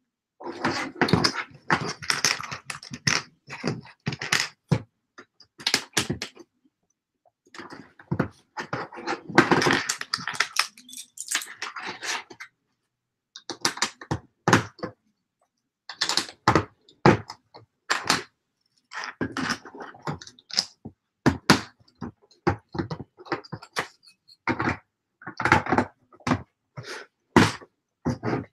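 Small plastic LEGO pieces clicking and rattling as they are picked up, handled and pressed together: clusters of rapid sharp clicks and knocks with short pauses between them.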